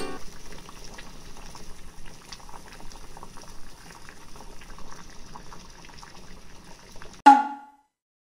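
Pot of water at a rolling boil on a gas stove, bubbling steadily with many small pops. About seven seconds in, the bubbling cuts off under a short, loud, pitched sound effect that quickly dies away.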